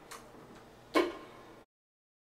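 Quiet room tone with a faint click just after the start and a sharp knock about a second in. The sound then cuts off to dead silence.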